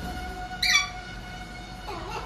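An Alexandrine parakeet gives one short, loud squawk a little over half a second in, over steady background music.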